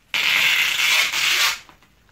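Packing tape unrolling from a handheld tape-gun dispenser as it is drawn across bubble wrap: one loud, continuous run of about a second and a half with a brief dip about a second in.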